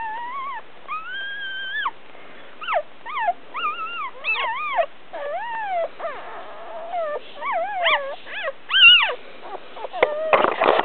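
Papillon puppy crying: high-pitched whines and squeals that rise and fall in pitch, one held cry about a second in, then a quick run of short cries, the loudest near the end.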